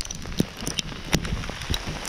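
Sleet falling: ice pellets hitting the ground and surfaces close by in scattered, irregular ticks. Footsteps on sleet-covered ground can be heard underneath.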